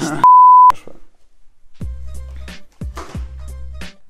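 A steady, one-pitch censor bleep lasting about half a second near the start, very loud. About two seconds in, music with a deep bass beat comes in.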